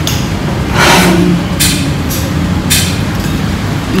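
A steady low machine hum, with three brief hissing noises about a second apart.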